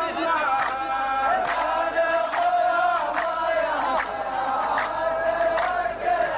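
A large men's chorus chanting a qalta poem's verse back in unison. The chant is a slow melodic line of long held notes, with a sharp accent about every second.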